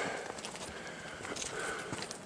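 Footsteps on a rocky dirt trail: faint, uneven crunching steps of someone walking.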